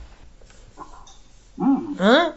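Low room tone, then near the end a dog barks, a short loud cry.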